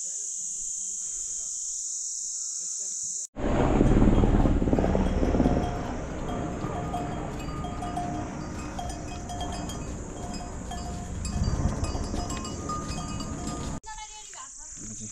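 A steady high insect buzz, then, after a sudden change about three seconds in, a pack-mule train passing with its neck bells clanking again and again over a loud jumble of movement noise; the insect buzz returns near the end.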